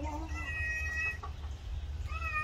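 Parrot whistling: a short rising note, then one long level whistle of about half a second, then a faint short note.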